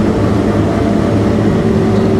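New Holland CR8.80 combine harvester running steadily while cutting and threshing barley, heard inside the cab: a constant low engine and machine drone.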